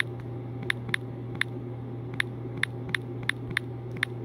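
Typing on a phone's on-screen keyboard: about ten short, crisp clicks, one per key, unevenly spaced, over a steady low hum.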